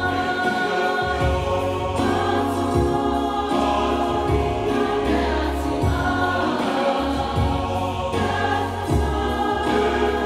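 A church choir singing a hymn in parts, accompanied by an electronic keyboard holding low bass notes under chords that change every second or two.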